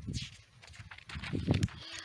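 Short non-word vocal sounds and a breath from a woman between sentences, over a low rumble on the microphone.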